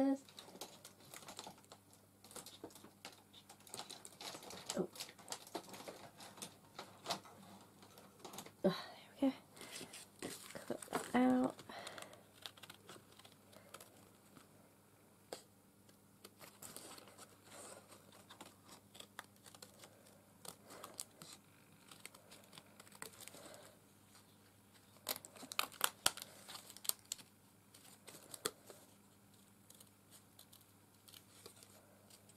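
Small craft scissors snipping and cutting through thin white card, with the card rustling as it is handled and turned, and a quick run of snips late on.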